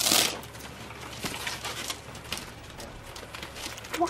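A brief rustle right at the start, then faint rustling and scattered small clicks of someone moving and handling things around an office desk.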